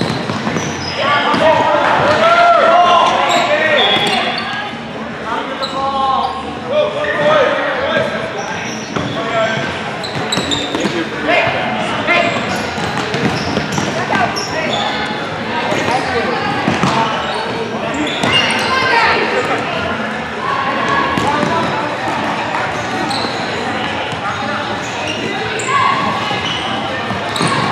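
Futsal game on a hardwood gym floor: the ball thudding as it is kicked and bounces, amid shouting from players and onlookers, all echoing in the large hall.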